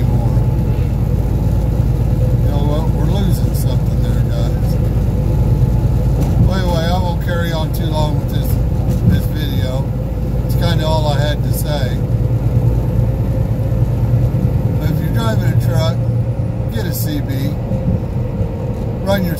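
Short bursts of garbled voices over a CB radio, coming and going several times, over the steady low drone of the truck's engine and road noise in the cab.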